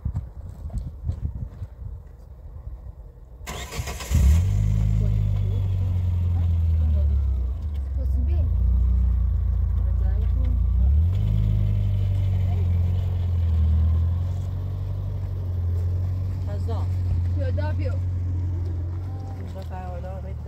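A car engine is cranked and catches about four seconds in, then runs at a steady idle with a couple of brief changes in engine speed.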